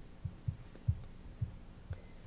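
About five soft, dull, low thumps at uneven intervals of roughly half a second, over a steady low hum: knocks and handling on the meeting table, picked up by the table microphones.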